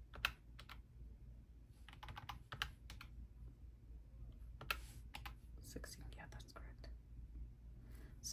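Faint, irregular clicks of fingers pressing the keys of a desk calculator, coming in small clusters as a sum is entered.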